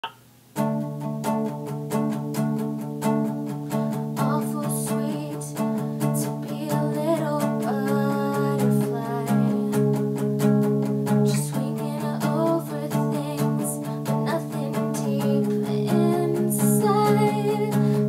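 Epiphone Hummingbird acoustic guitar strummed in a steady rhythm through chord changes, beginning about half a second in: the instrumental intro of the song.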